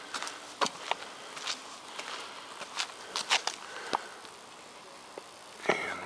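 Footsteps and scuffs on a concrete patio, a scatter of short irregular clicks, with light camera-handling knocks.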